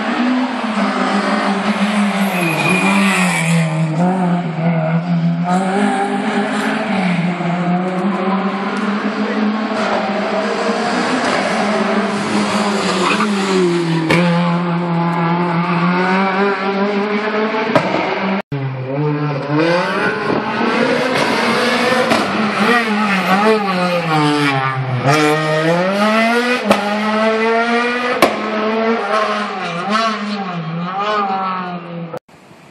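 A competition car's engine revving hard and easing off again and again through a tight course of chicanes, its pitch climbing and dropping with each burst of throttle. The sound breaks off abruptly about 18 seconds in, then carries on with the same rising and falling revs.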